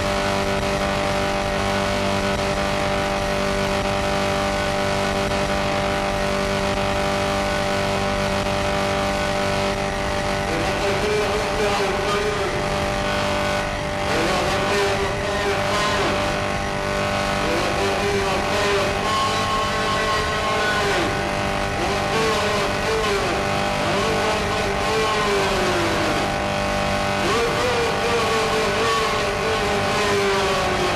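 Noise music: a dense, steady wall of distorted noise over layered droning tones. About ten seconds in, wavering, swooping tones start rising and falling over it.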